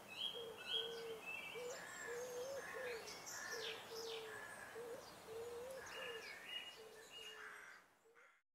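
Faint birdsong from several birds: short, low whistled notes repeating over higher chirps and twitters, fading out near the end.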